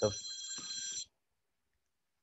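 A steady electronic ringing tone made of several high fixed pitches, lasting about a second and cutting off suddenly.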